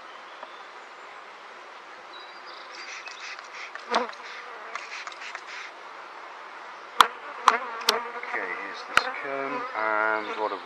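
Honeybees from an opened top-bar hive colony buzzing steadily. Over the hum come a knock about four seconds in and several sharp clicks in the last few seconds as a comb is freed from the hive and lifted out.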